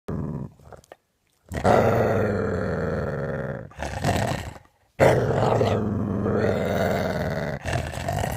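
A large dog growling, low and throaty. A short growl comes first, then after a pause come long growls of two to three seconds each, with short breaks between them and another starting near the end.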